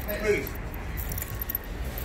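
Faint scattered light clinks and jingles over a steady low outdoor rumble, with a brief snatch of voice near the start.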